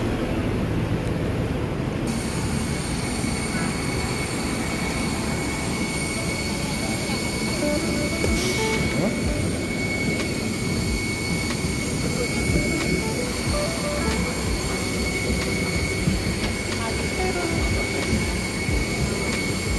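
Steady apron noise from a parked jet airliner: a low rumble with a high, even whine that comes in about two seconds in, with voices in the background.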